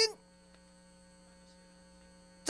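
Faint, steady electrical hum with a few thin high-pitched whines, in a pause between shouted words.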